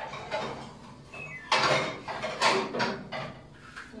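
Someone rummaging in a kitchen cupboard for a plate: a door moving and dishes knocking and rattling together, loudest about one and a half and two and a half seconds in.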